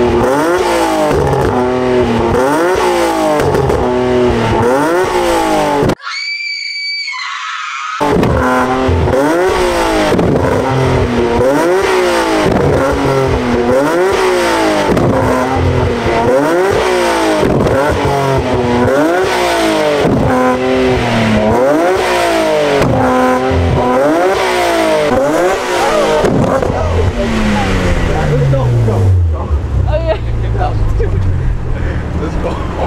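Infiniti G37's 3.7-litre V6 free-revving while parked, the revs climbing and dropping about once a second through the exhaust as the driver tries for exhaust flames. About six seconds in, the engine cuts out for two seconds and a high steady tone sounds in its place; near the end the revs fall away slowly.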